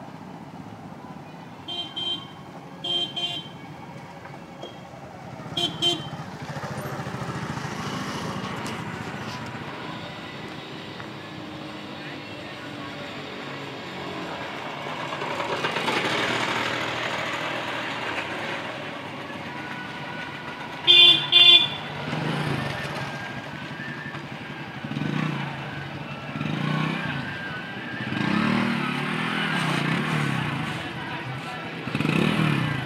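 Street traffic with vehicle horns tooting in short beeps: a few in the first several seconds and two loud toots about two-thirds of the way through. A steady din of traffic and voices runs underneath.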